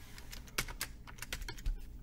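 Computer keyboard typing: a short run of irregularly spaced key clicks as a word is typed.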